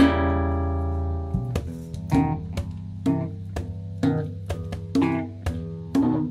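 Rock band's instrumental passage. A guitar chord is struck with a low bass note and left to ring, fading over about a second. Then guitar and bass play short plucked notes over a steady beat of about two hits a second.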